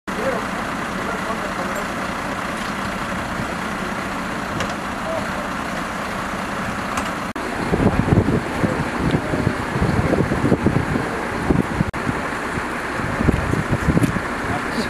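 Fire engine's diesel engine idling, a steady hum. After a sudden cut about seven seconds in, the sound turns to louder, uneven low rumbling with muffled voices.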